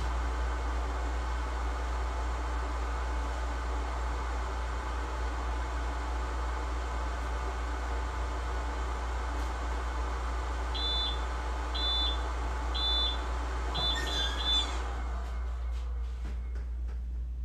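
A heat press timer beeps about once a second three times, then gives several quick beeps, signalling that the pressing time is up. A short burst of noise follows as the press is opened, over a steady hum of shop machinery.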